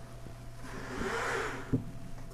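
Paper rustling for about a second as pages are handled at a lectern, then a single sharp knock near the end.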